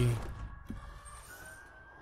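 A man's voice trails off, then a quiet stretch of a film trailer's soundtrack. It is faint, with a single soft click and a thin tone rising slowly in the second half.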